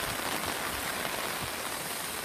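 Torrential rain pouring down in a steady, dense hiss.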